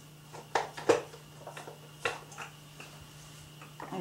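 Plastic clicks and knocks as a small food processor's lid and bowl are taken off its base. There are a few sharp clicks, the loudest about a second in.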